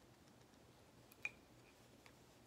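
Near silence as a corkscrew is worked into a tight cork in a glass wine bottle: a few faint ticks and one short click a little past a second in.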